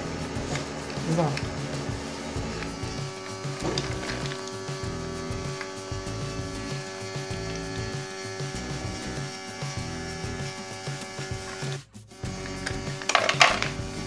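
Small electric motor of an automatic pet feeder running with a steady hum as it dispenses a portion of dry kibble into the tray, cutting out briefly about 12 seconds in.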